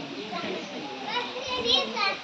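A crowd of young children talking and calling out at once, an overlapping hubbub of many voices.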